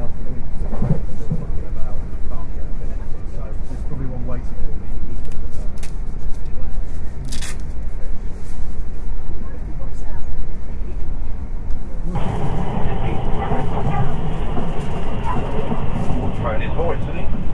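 Steady low rumble of a moving passenger train, heard from inside the carriage. Indistinct talk from people nearby runs over it and grows louder and clearer about twelve seconds in.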